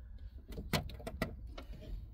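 A few sharp clicks and light knocks of hands working the plastic trim clips of a truck's under-dash panel, with two louder clicks about half a second apart near the middle.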